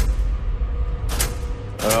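Suspenseful drama underscore: a steady low rumbling drone with a faint held tone, struck by three sharp hits, at the start, about a second in, and near the end.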